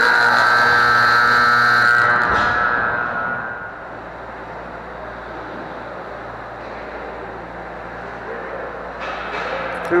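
Ice rink's game horn sounding one long, steady blast of about two seconds, then ringing away in the arena, the signal that the game is over. A steady low rink hum follows.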